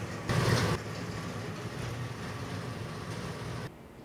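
Heavy machinery running with a steady low hum while a bin of shredded material is tipped out, with a brief louder rush about half a second in. The sound stops abruptly near the end.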